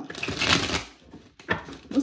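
Tarot cards being shuffled by hand: a quick fluttering riffle of the cards that lasts about a second, followed by a single light tap of the deck a little later.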